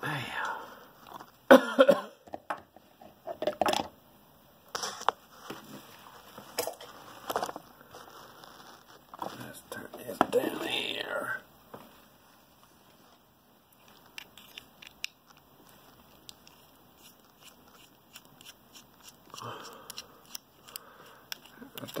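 Scattered small clicks, taps and knocks of a padlock being handled: a picked ASSA Ruko padlock is taken out of its vise clamp and turned over in the hand.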